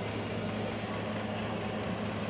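Steady low background hum, as of a machine running in the room, unchanging throughout.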